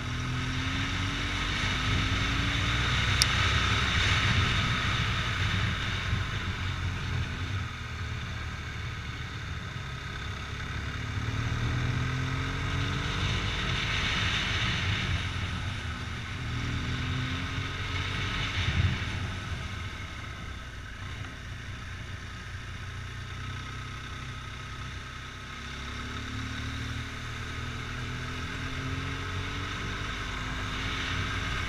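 Motorcycle engine running while riding, its revs rising and falling repeatedly, over a steady rushing noise of wind on the mounted camera.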